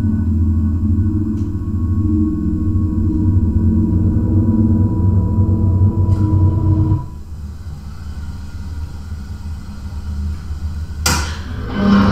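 Low, steady droning from a horror film's soundtrack, with a few held tones over it, that cuts off suddenly about seven seconds in and leaves a quieter low hum. Near the end a sudden loud hit breaks in.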